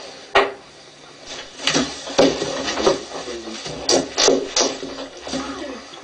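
Indistinct voices from a video playing through computer speakers, with several sharp clicks scattered among them.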